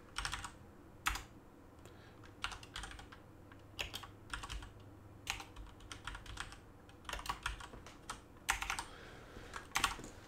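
Typing on a computer keyboard in short, irregular bursts of keystrokes with pauses between.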